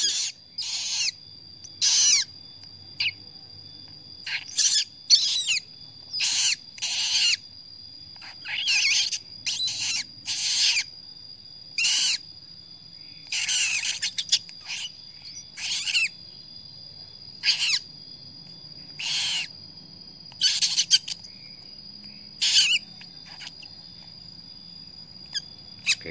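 Newly hatched Eleonora cockatoo chick giving short, high, rasping begging calls over and over, about one every second, with a few short gaps, while being hand-fed by syringe: the chick is asking for more food.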